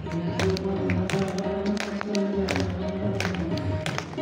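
Hindu devotional music with steady held notes and a quick, uneven run of sharp percussive beats.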